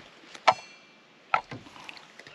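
Two sharp clanks of metal camp cookware, the first about half a second in ringing briefly, the second just under a second later.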